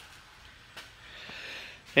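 A pause in speech with a soft intake of breath in the second half, just before the man speaks again.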